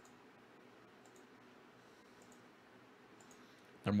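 Computer mouse button clicking faintly, about once a second, over quiet room tone.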